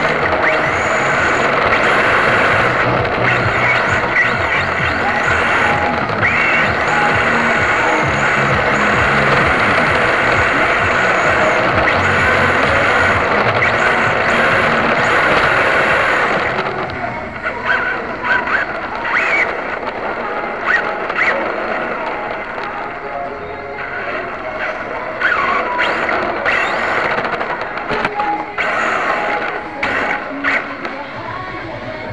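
Onboard sound from an electric RC drift car during a run: a loud, dense noise of the motor, drivetrain and rattling chassis. It drops off a little over halfway through, leaving scattered knocks.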